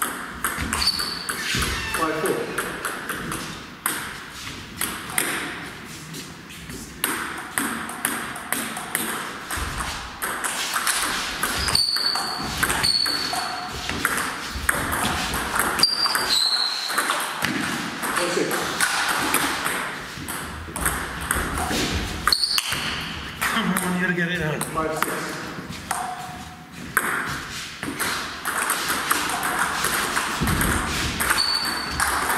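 Table tennis rallies: the ball clicking off the bats and bouncing on the JOOLA table in quick back-and-forth runs, with short pauses between points.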